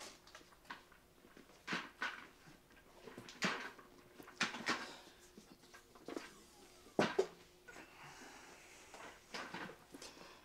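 A chair being brought over and set down: a run of scattered knocks and clunks, the loudest about seven seconds in, then a faint hiss.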